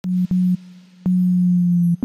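Low, nearly pure synth bass tone from the Serum soft synth, sounded once briefly and then held for about a second, with small clicks where the notes start and stop.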